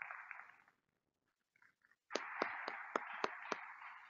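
Audience applauding, heard thinly. A short patch of clapping fades out in the first second, and a fuller round with a few sharp individual claps starts about two seconds in.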